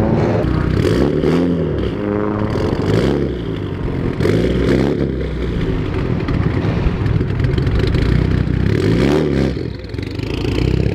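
Modified car engines revved in short blips as the cars pull away, the pitch rising and dropping back several times, with sharp cracks in between.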